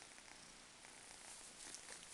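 Faint purring of a kitten, barely above room tone.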